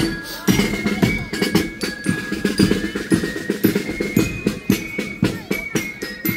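Marching band playing: snare and bass drums beating a quick march rhythm, with held high notes over the top.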